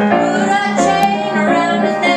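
A group of young voices singing together to piano accompaniment, the piano playing a steady chord rhythm. A single sharp click about a second in.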